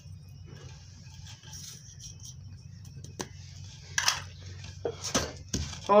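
Salt poured from a small bowl trickles into a clay mortar. Then a pestle knocks against the mortar several times as the pounding of chillies, ginger and spices into a paste begins. A low steady hum runs underneath.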